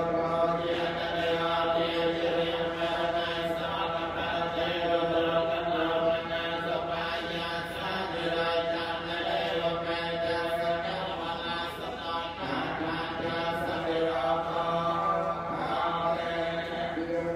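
Theravada Buddhist monks chanting Pali verses in unison. The recitation is steady and held on level pitches, with brief pauses about six and twelve seconds in.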